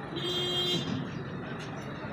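Street traffic dominated by a truck's engine running, with a short steady higher tone in roughly the first second.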